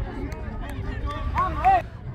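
Voices shouting just after a goal, with a couple of high-pitched shouts that rise and fall about a second and a half in, over a steady low rumble.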